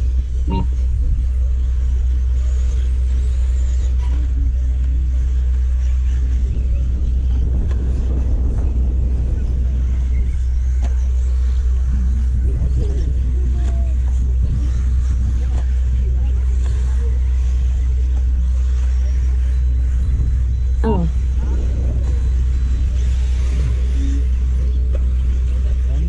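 Steady low rumble under the sound of electric brushless RC buggies racing on a dirt track, with faint voices now and then.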